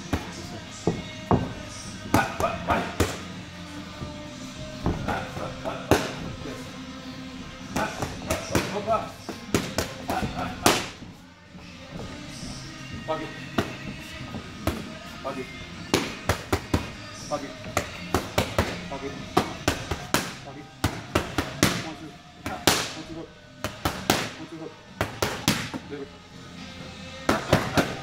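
Boxing gloves smacking focus mitts in quick combinations: sharp slaps, several in close succession, then short pauses. Background music plays underneath.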